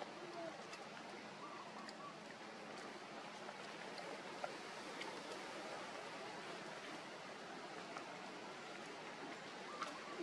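Steady outdoor background hiss, fairly quiet, with a few faint brief squeaks and ticks.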